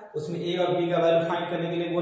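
A man's voice talking in long, drawn-out syllables.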